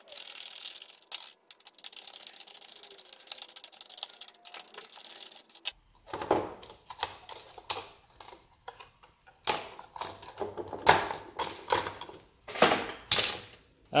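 A screwdriver backing out the mounting screws of an electrical outlet, a fine, rapid clicking, followed by irregular clicks and knocks as the outlet is pulled from a blue plastic electrical box and the parts are handled on a steel bench.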